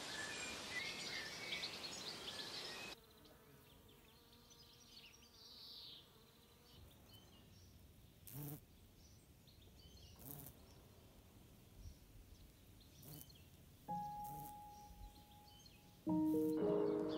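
Faint garden ambience with small bird chirps for the first few seconds. Then, quieter, a few short buzzes of a bumblebee on the grass, and a steady tone coming in near the end.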